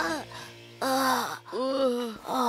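Cartoon characters' voices groaning in pain, two drawn-out groans, the first about a second in and the second near the end.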